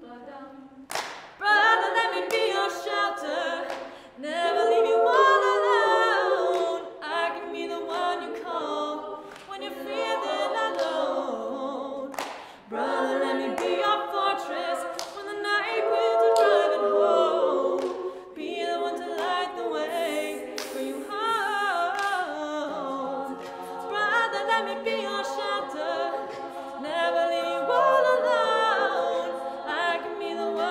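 An a cappella group of several voices singing a song in harmony, with no instruments.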